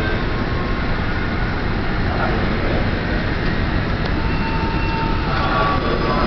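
Passenger train coaches rolling along the station track, a steady rumble of steel wheels on the rails as the train moves on.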